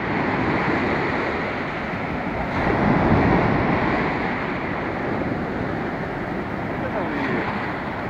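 Sea surf breaking and washing up the sand close by, a steady rush that swells about three seconds in and then eases.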